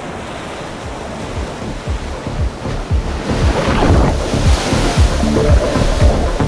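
Ocean surf rushing over background music with a steady low beat; the rush of whitewater swells up loudly about halfway through.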